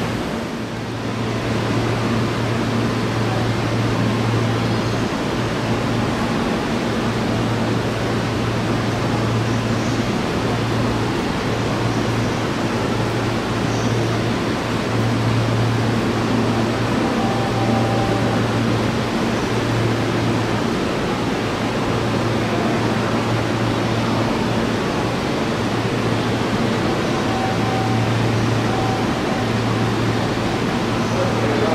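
A Seibu 001 series Laview electric train standing at a platform, its onboard equipment and air-conditioning running as a steady rush with a low hum that drops out briefly every few seconds.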